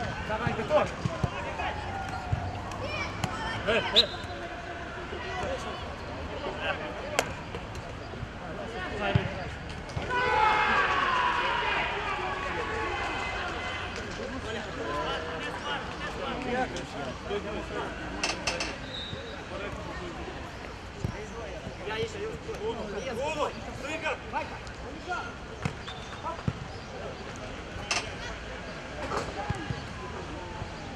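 Football players calling and shouting across the pitch, with sharp thuds of the ball being kicked now and then. About ten seconds in, the shouting grows louder for a few seconds.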